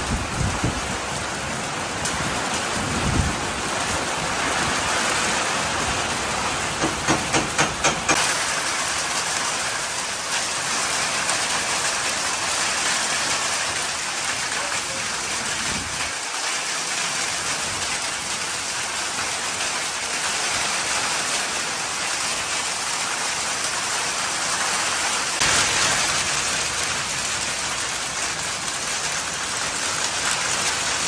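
Heavy rain pouring down onto a paved yard and nearby roofs, a dense steady hiss. A quick run of about six sharp taps comes around seven seconds in.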